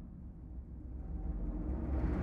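Low, rumbling orchestral intro music, a sustained deep drone that fades over the first second and swells again toward the end.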